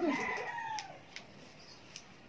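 A rooster crowing: one drawn-out note falling in pitch, fading out about a second in. After it come two faint snips of scissors cutting hair.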